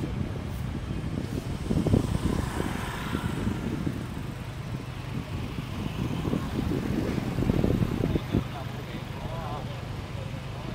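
Street traffic heard from a moving motorbike: a steady low rumble of engines and wind on the microphone, with indistinct voices now and then.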